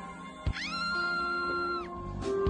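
A single long cat meow that rises, holds steady and drops off near the end, over background music.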